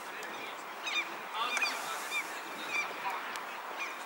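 Birds calling repeatedly in short, high calls over a steady outdoor background hiss.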